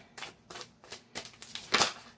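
A deck of oracle cards being shuffled by hand: a run of irregular sharp card flicks and taps, the loudest one shortly before the end.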